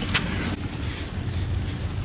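Wind on the microphone, a steady low rumble.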